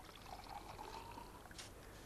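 Liquid poured from a glass decanter into a drinking glass, the note of the filling glass rising as it fills. A short click comes near the end.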